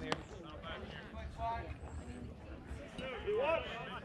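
Distant voices of players and spectators calling out and chattering, one voice louder about three seconds in, with a single sharp pop right at the start.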